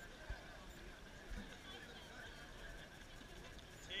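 Faint, distant voices from crews on the water over a low outdoor background, with a light knock about a third of a second in.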